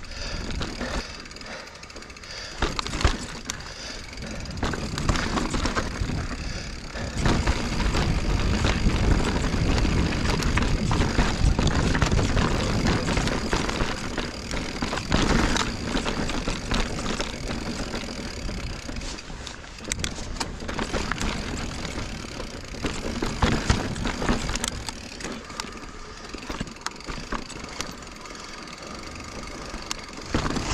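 2021 Giant Reign Advanced Pro 29 mountain bike being ridden over a rocky trail: tyres rolling on rock with scattered sharp knocks and rattles from the bike. The rumble is heaviest for about ten seconds in the middle.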